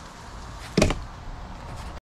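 A single short, sharp knock about a second in, over a faint steady hiss.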